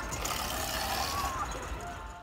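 Children's quad bike running under throttle as it drives off, a steady low rumble, with faint voices in the background.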